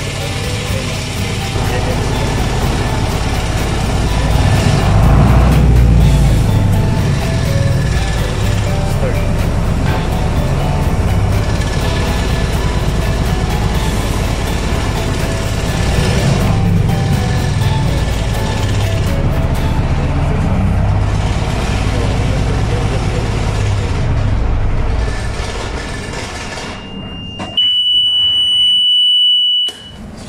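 Lifeboat engine running steadily, loudest about five seconds in. It dies away about 26 seconds in, and a steady high warning buzzer from the control panel sounds for the last few seconds.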